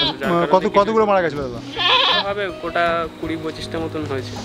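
Beetal goat bleating several times as it is held and pulled by the head, with the clearest, wavering bleat about halfway through.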